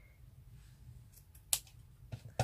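One sharp click about one and a half seconds in, with a few faint ticks just before it, over quiet room tone.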